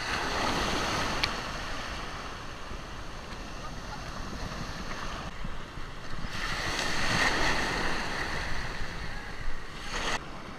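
Shallow ocean surf breaking and washing around a camera held at water level, with wind on the microphone. The wash swells louder twice: right at the start and again from about six seconds in.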